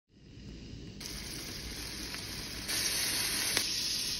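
Peeled red shrimp frying in oil in a stainless steel pan: a steady sizzle that fades in and grows louder in steps, about a second in and again past halfway, with an occasional faint pop.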